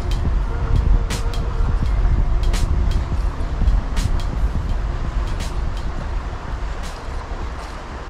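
Heavy low wind rumble on the microphone over a flowing creek, with a few short handling clicks.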